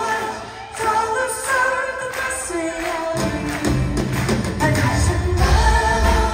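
Irish folk band playing live with singing in vocal harmony; about three seconds in the band comes in fuller, with a heavy low end, and plays on.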